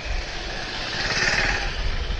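Motorcycle engine running at low speed in slow street traffic, with a steady low rumble. A hiss swells and fades about a second in.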